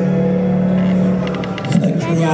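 Live concert band accompaniment for a slow ballad: a sustained chord that fades about a second and a half in, then a quick run of light ticks near the end.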